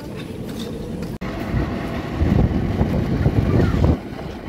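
Small wheels of an empty flat platform cart rolling over asphalt with a rattling rumble, starting after an abrupt break about a second in and growing louder over the last two seconds.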